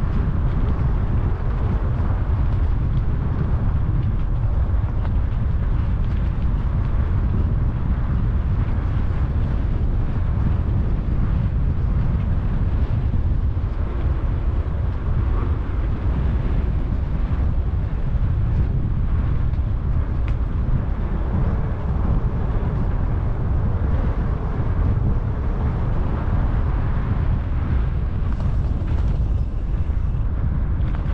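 Steady low wind rumble buffeting the microphone of a camera on a moving bicycle, with the rush of riding along an asphalt road.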